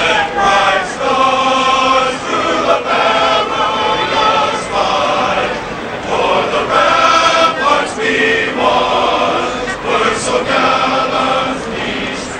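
A large group of voices singing together as a choir, holding chords in short phrases with brief breaks between them.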